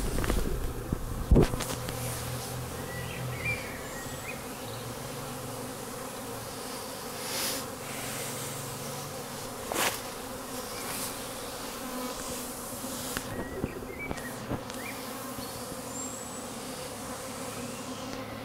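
Honeybees buzzing in a steady hum at a row of wooden hives. A sharp thump about a second in, with a few softer knocks later.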